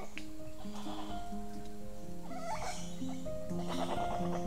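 Geoffroy's spider monkeys calling in the forest canopy, with a wavering call clearest about two and a half seconds in, over background music of slow, held notes.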